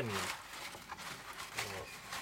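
Quiet, irregular crinkling and rustling of a sheet of pergamin roofing paper being pushed into place by hand.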